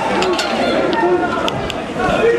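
Many overlapping voices of a close-packed crowd of protesters and riot police, with a few short sharp knocks.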